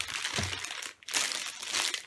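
Packaging crinkling and rustling as a wrapped planner is handled and lifted up, in two spells with a short break about a second in.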